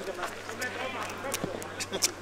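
Outdoor sound at a football match: faint, distant voices from the pitch, with several short sharp clicks in the second half.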